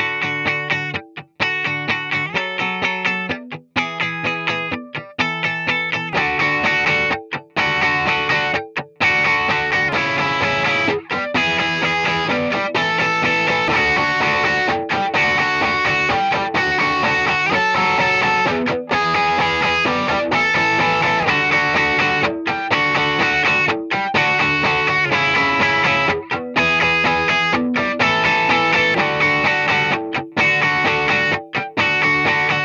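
Electric guitar demo: short chords played clean with pauses between them, then from about six seconds in the same kind of playing through overdrive, a Klon-style Bondi Effects Sick As and a Keeley-modded Ibanez TS9, heard alone and then stacked with the Sick As into the TS9, fuller and more sustained with small breaks between phrases.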